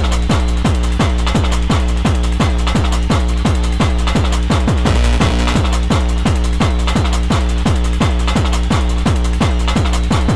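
Fast electronic dance track in the hard techno / makina style: a rapid, steady kick drum, each hit with a falling pitch sweep, over a held low bass line, with no vocals.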